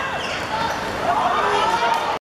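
Players and spectators shouting during an attack on goal in a youth football match, over the ball being kicked on a hard court.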